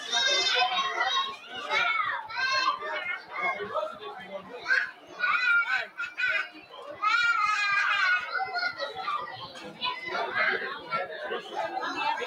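Children playing and calling out in high-pitched voices, in overlapping bursts, loudest near the start and about seven seconds in.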